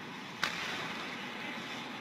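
Ice hockey rink sound during play: a steady hiss of skates on the ice, with a single sharp click about half a second in.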